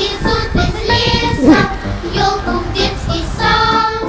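A song with a child's voice singing over music.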